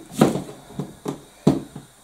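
Kitchen knife cutting the core out of a cabbage on a chopping board: a few short knocks and crunches of the blade, the two loudest just after the start and about a second and a half in.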